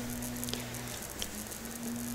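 Quiet room tone with a steady low hum and light rustling as a plush toy is handled on bedding, with a couple of faint ticks.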